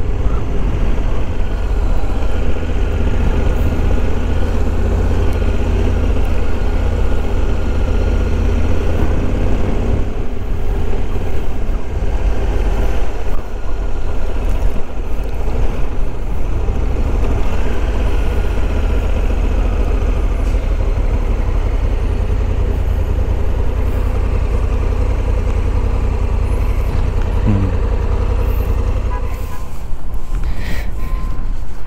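Honda Africa Twin 1100's parallel-twin engine running steadily as the motorcycle rolls along at low speed, with a deep, constant rumble beneath it.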